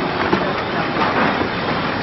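Biscuit packing machine running: a dense, steady mechanical clatter with many small clicks.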